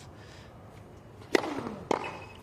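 Two sharp strikes of a tennis ball on racket strings, about half a second apart, past the middle: a serve and its return.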